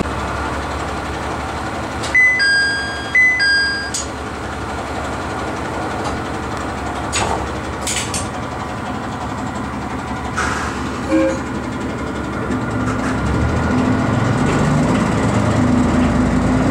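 Inside a diesel railcar: a steady low engine rumble, with a two-note electronic chime (high then lower) sounding twice about two seconds in. Toward the end a low engine hum grows louder as the railcar builds power.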